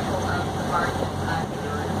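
A boat's engine running with a steady low hum, with water and wind noise, under indistinct talking.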